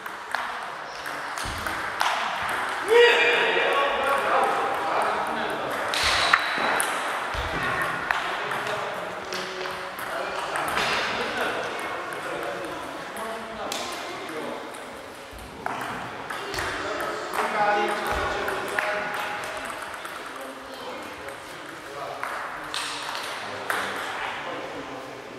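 Table tennis balls clicking off bats and tables, in an irregular scatter of sharp knocks from rallies at several tables, with voices talking in the background.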